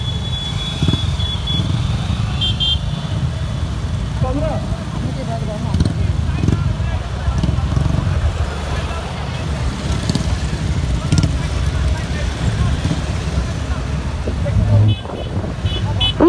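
Many motorcycles riding together in a procession, their engines running in a steady low rumble, with a few brief horn toots.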